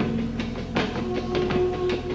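Live band music: held pitched notes over a steady beat of drum hits.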